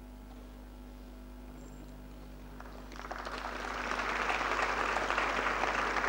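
A faint low hum, then an audience starts applauding about halfway in, the clapping growing to a steady level as those who rose are acknowledged.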